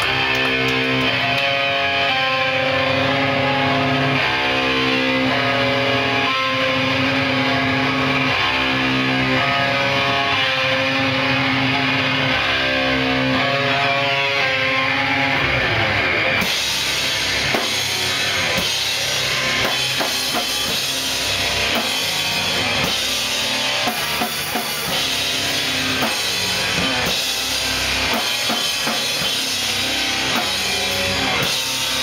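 Hardcore punk band playing live in a small club: electric guitar and bass play a riff, then about halfway through the drums and cymbals come in hard and the whole band plays together.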